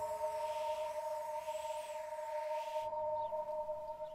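Film background score: a sustained electronic drone of two steady held tones, with a swelling, airy wash above it that cuts off about three seconds in.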